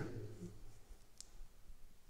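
Quiet room tone with one faint, short click just past a second in.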